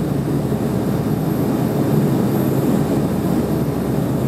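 Steady cabin noise of a Dash 8 turboprop airliner on final descent with its landing gear down, heard from inside the cabin: an even, low drone of engines and propellers.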